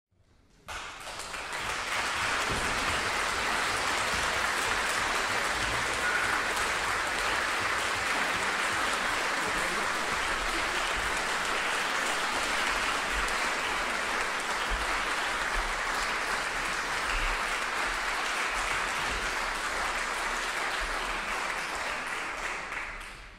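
Concert audience applauding steadily, starting abruptly under a second in.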